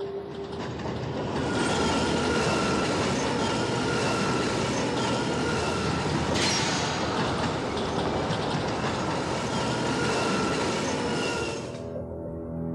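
Subway train running through a tunnel: a loud, steady rumble and rattle with a thin high whine over it. It swells about six seconds in and cuts off suddenly near the end.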